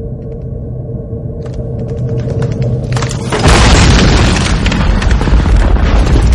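War-film battle soundtrack: a muffled low rumble with a steady ringing tone, then scattered sharp cracks of gunfire from about a second and a half in. A little after three seconds the full battle cuts in loud, with deep explosion booms and dense gunfire.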